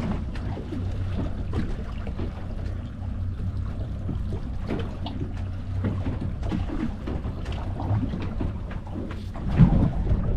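Steady low rumble of wind and water around a small fishing boat at sea, with scattered light knocks and taps, and one louder thump near the end.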